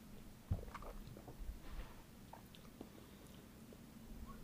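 Faint mouth sounds of a man tasting a sip of a cocktail, with small lip and tongue clicks, and one soft low thump about half a second in.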